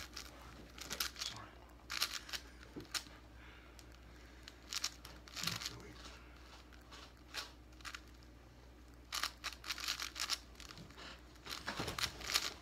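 A plastic 5x5 puzzle cube being turned fast by hand in a speedsolve: runs of rapid clicking and rattling from the layers, broken by short pauses.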